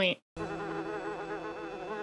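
A housefly buzzing in the film's soundtrack: a steady buzz, wavering slightly in pitch, that starts about a third of a second in after a brief silence.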